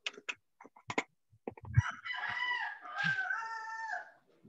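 A few short clicks, then a drawn-out pitched call lasting about two seconds, in two parts, that cuts off suddenly at the end.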